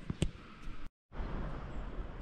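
Faint indoor room tone with two short clicks, a brief total dropout at an edit cut, then a steady low outdoor rumble of air noise on the microphone.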